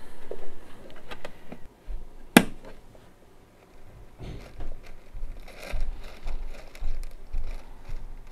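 Hands seating a plant's net pot in a plastic container lid and pressing clay pebbles around the stem: light rustling, rattling and small knocks, with one sharp click about two and a half seconds in.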